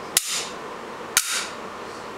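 Steel nails snapping onto the base of a magnetic bulk parts lifter: two sharp metallic clicks about a second apart, each with a brief ringing tail.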